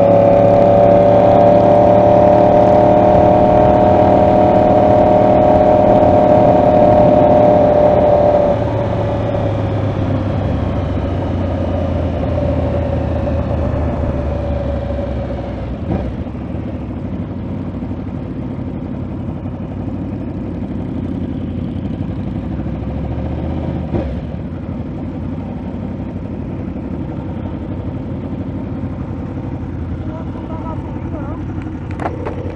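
Yamaha R1 inline-four sport bike engine heard from the rider's position, running steadily under way. About eight seconds in, the engine note drops away as the bike slows, leaving a lower engine and traffic rumble with a couple of brief knocks.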